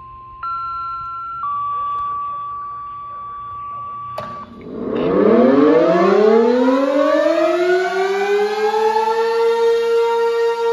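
Steady beeping tones from a handheld two-way radio's speaker, changing pitch twice and ending with a click. Then a pole-mounted outdoor warning siren with clustered horn speakers starts up: a loud wail that rises in pitch for about three seconds and then holds a steady tone, sounding for a tornado drill test.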